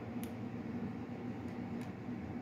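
A steady low hum, with a couple of faint clicks.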